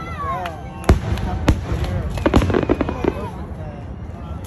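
Aerial fireworks shells bursting overhead with sharp bangs, the loudest about a second in and another half a second later, then a quick run of crackling a little past two seconds in. People's voices chatter between the bursts.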